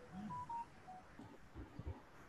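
Four short, faint electronic beeps at different pitches in quick succession during the first second, like keypad or notification tones.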